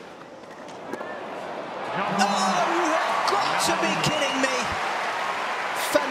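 Tennis ball hits during a clay-court rally, then a stadium crowd breaking into shouts and cheers about two seconds in, with some clapping.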